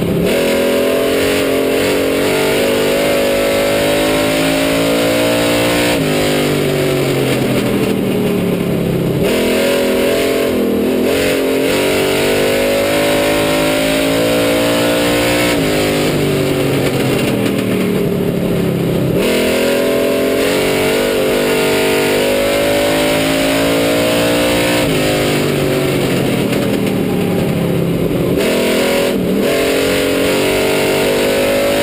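Street stock race car engine heard from inside the cockpit, running at racing speed around an oval. It revs up steadily, then drops off sharply as the driver lifts for each turn, twice a lap, about every five seconds.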